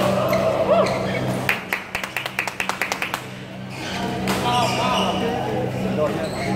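Indoor badminton hall sound: a steady low hum, players' short calls and voices, and a quick run of about a dozen sharp taps in the middle, a little under two seconds long.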